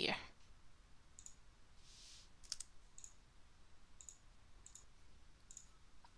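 Faint, scattered clicks of a computer mouse, about eight spread over a few seconds, over a low steady hiss.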